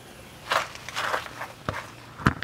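Footsteps: two scuffing steps about half a second and a second in, then a short sharp click near the end.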